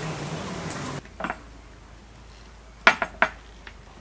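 Chicken frying in butter in a pan, sizzling for about the first second before it cuts off abruptly; then a few sharp clinks of a metal utensil against a dish, the loudest two in quick succession near the end.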